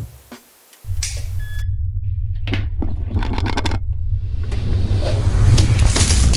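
A loud, steady low rumble starts about a second in, with short bursts of hissing noise over it, the loudest near the end.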